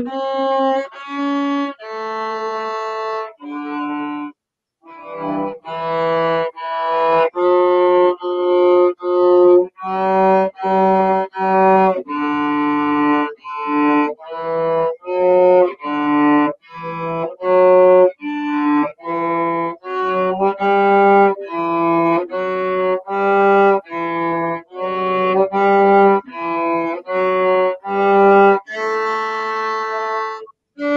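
Cello played solo, a melody of separate bowed notes at about two notes a second in its middle register, with a short pause about four seconds in.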